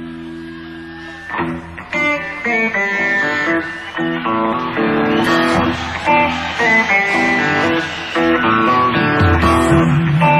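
Electric blues-rock guitar played live through an amplifier: a held chord rings and fades, then about a second and a half in a run of single notes and chords starts. A bass guitar comes in near the end.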